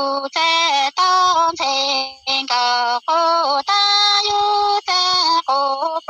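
A woman singing Hmong sung poetry (lug txaj) unaccompanied, in short held notes that step up and down, with brief breaks between phrases.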